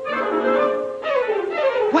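Orchestral film score with woodwinds and brass, playing quick falling runs.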